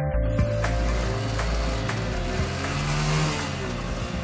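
Background music with steady low notes over a motorcycle engine being accelerated on a roller test stand, its noise swelling up to about three seconds in.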